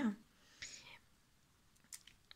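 A woman's speech trails off, then a pause with one short, soft breath and a single faint click near the end.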